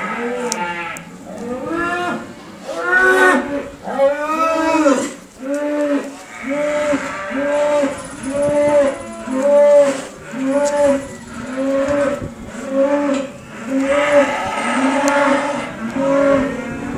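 Calves mooing in a long run of short calls, about one a second, each call rising and falling in pitch; the first few calls are higher and stronger, then they settle into an even, repeated rhythm.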